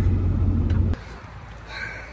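A truck engine idling with a steady low rumble, heard from inside the cab. It stops abruptly about a second in.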